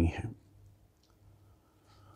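A man's spoken word ends about a third of a second in, then near silence: room tone with a faint steady low hum.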